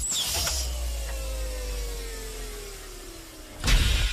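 Sound effect of a heavy steel bank-vault door opening: a mechanical whir that slowly falls in pitch over a low rumble, ending in a loud thud near the end.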